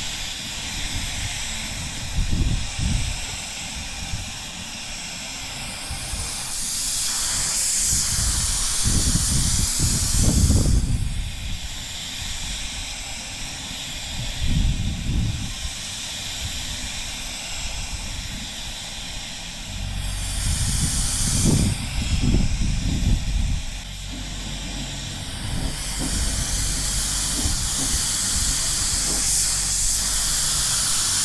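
Compressed-air paint spray gun spraying in passes: a continuous air hiss that swells loudly three times for a few seconds each. Gusts of wind rumble on the microphone.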